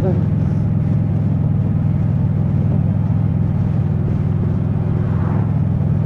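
Motorcycle engine running steadily at cruising speed, with wind noise over it, picked up by a helmet-mounted microphone.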